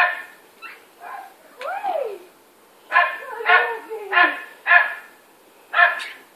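Labrador barking in short, separate barks: one at the start, a run of four about half a second apart beginning about three seconds in, and one more near the end, with fainter calls in between.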